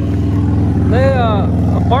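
Motorcycle engine idling steadily close by, with a person's voice calling out briefly about a second in.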